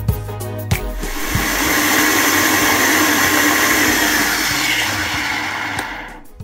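High-powered countertop blender starts about a second in and runs steadily at high speed, pulverising raw cassava and plantain chunks into a smooth batter, then dies away near the end.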